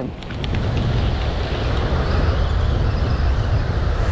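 Wind rumbling on the microphone over a steady hiss of surf, with a few light clicks in the first half second.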